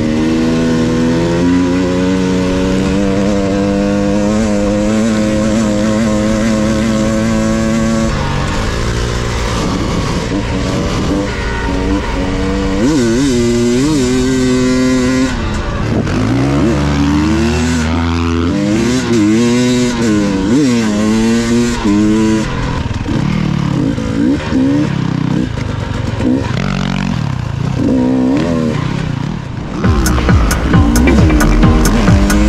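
Enduro dirt bike engine running at a steady throttle, then revving up and down repeatedly through the middle of the stretch as the rider works the throttle on loose sand.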